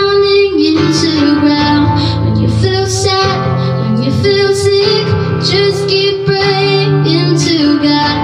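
A woman singing a worship song with held, gliding notes, accompanying herself on an acoustic guitar.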